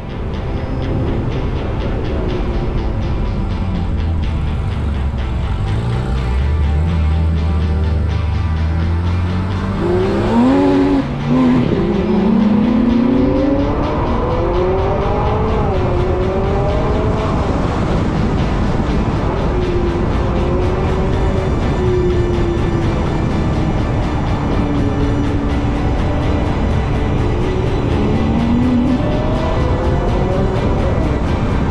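Ferrari 458 Spider's naturally aspirated V8 pulling away and driving on. It holds a low note at first, then rises in pitch through the gears with a brief break about eleven seconds in. It settles to a steady cruise and climbs again near the end.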